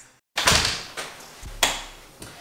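An apartment front door being shut behind someone coming in: a sudden thump about half a second in that fades away, then a sharper knock about a second later.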